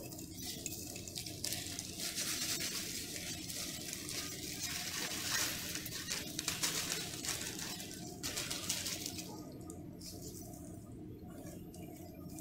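Rustling of a salt packet being handled over a box of crushed ice, with salt grains scattering onto the ice: a faint, crackly hiss of many small ticks that dies down for the last few seconds.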